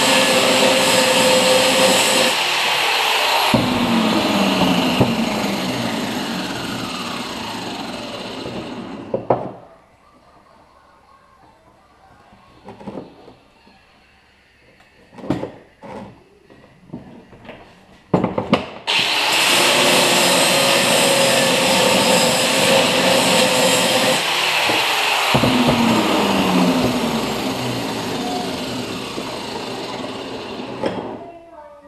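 Electric angle grinder working steel, then its motor winding down with a falling whine after the trigger is released. Between the two runs there is a quiet stretch of scattered clinks and knocks of metal parts handled on the bench. The grinder starts again at full speed about two-thirds of the way through and winds down again near the end.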